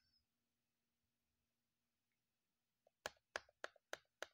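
Near silence, then about three seconds in a quick run of four sharp clicks, roughly three a second.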